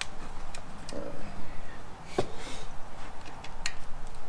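Scattered light clicks and taps of hands handling wiring and small hardware on top of a motorcycle engine, with one sharper knock about two seconds in.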